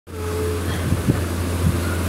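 Steady low mechanical hum filling the room, with a few faint soft taps about a second in and again near the end.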